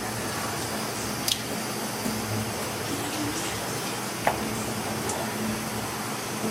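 Eggs being cracked against the rim of a stainless steel bowl: two sharp taps about three seconds apart, over a steady background hiss.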